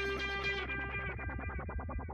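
Background music on guitar, its held notes breaking into a fast pulsing repeat of about ten a second as it fades down.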